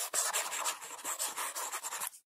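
Chalk writing on a blackboard: a rapid run of short, scratchy strokes.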